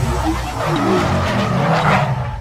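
Logo sound effect of a car engine and skidding, squealing tyres, with music underneath; the screech grows stronger toward the end.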